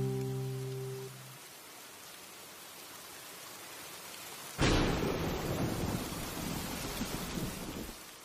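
The last acoustic guitar chord fades out, leaving a faint steady hiss like rain. About four and a half seconds in, a sudden loud clap of thunder with rain bursts in, rumbles and slowly dies away.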